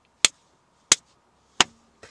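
Three sharp clicks, evenly spaced about two-thirds of a second apart.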